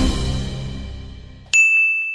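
Logo sting from a channel outro: a full musical hit fading away, then a single bright bell-like ding about a second and a half in that rings on and slowly dies.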